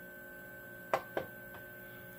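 Two sharp clicks about a quarter second apart, the rotary select knob on a Magnum Energy inverter remote panel being pressed and released, over a steady faint electrical hum with a thin high whine.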